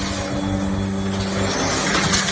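Packing machinery running: a steady motor hum with a mechanical hiss that grows louder near the end.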